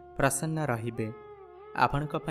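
A man's voice narrating in Odia, with held notes of soft background music showing through in the short pause about a second in.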